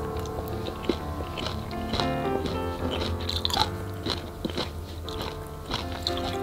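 Crunchy bites and chewing of seasoned chwinamul greens, a short crackle about every half second, over soft piano music.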